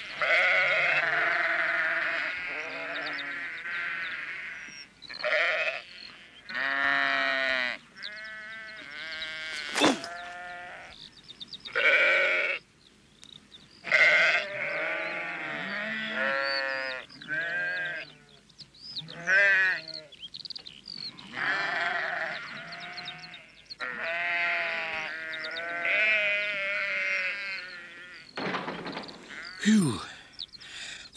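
Several sheep bleating over and over, long wavering calls one after another, with a brief lull about halfway through.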